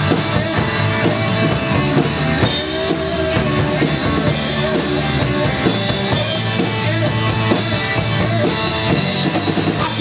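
Live rock band playing an instrumental passage with no vocals: a Premier drum kit keeping a steady cymbal beat under electric guitars and bass.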